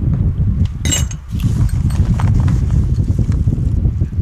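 Rough, crackling rustle of a padded mail envelope being rummaged through, with a single sharp clink of metal engine parts about a second in.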